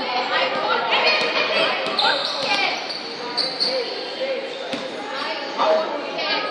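Voices talking in the background of a large hall with a hard floor, with a few sharp knocks scattered through, the clearest near five seconds in.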